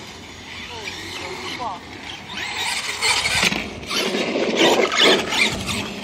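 RedCat Volcano EPX electric RC monster truck driving on asphalt: a high whine from its motor and gears that rises in pitch with the throttle, then denser and louder tyre and drivetrain noise from about halfway as it speeds up.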